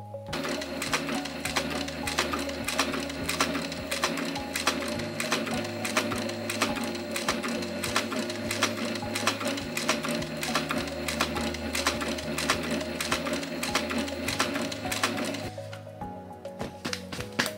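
Industrial sewing machine running steadily, stitching through leather with a rapid, even chatter of needle strokes; it starts just after the beginning and stops just before the end.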